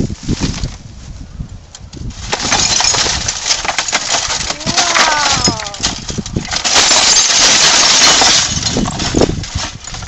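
Broken glass and plastic of a smashed television crunching, clinking and rattling as the wreck is handled and pulled apart, loud and continuous for several seconds from about two seconds in, with a few sharp cracks.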